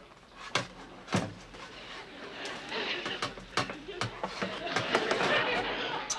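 Sharp knocks and clatter as a burnt roast is handled in a metal roasting pan, about five separate knocks spread through a few seconds.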